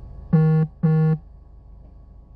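Two short, identical electronic beeps in a low, buzzy tone, each about a third of a second long and about half a second apart.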